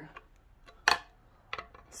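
A pry bar clinks sharply once against the metal timing cover about a second in, then makes a few faint light taps near the end as it is set against the next pry point.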